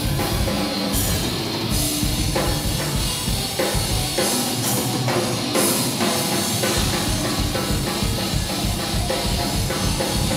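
A live rock band playing: electric guitars over a drum kit, with fast bass drum strokes and cymbal crashes. The bass drum thins out for a couple of seconds midway, then comes back in.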